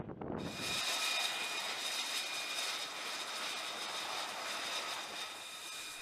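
Jet aircraft engine running steadily: an even rushing hiss with a few thin, steady high whine tones, starting about half a second in.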